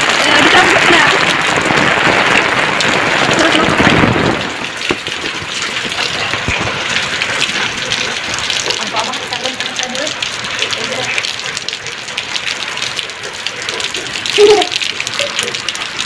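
Heavy rain pouring down: a dense, steady hiss of rain with countless small drop taps, loudest for the first four seconds and then settling to a steadier, slightly quieter downpour.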